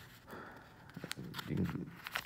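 Faint handling sounds of a sealed paper gauze packet being drawn out of a nylon med-kit pouch: a few light crinkles and ticks.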